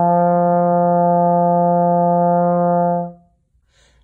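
Tenor trombone played through a fabric face mask that wraps around the mouthpiece, sounding one long steady held note that stops about three seconds in.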